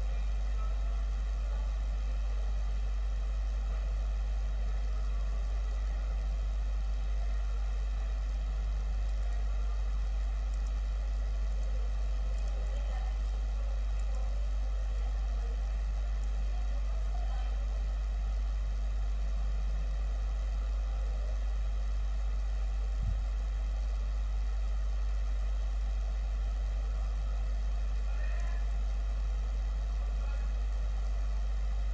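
A steady low hum with faint hiss over it and no speech or music: dead air in the bulletin's audio. A single small tick is heard about three quarters of the way through.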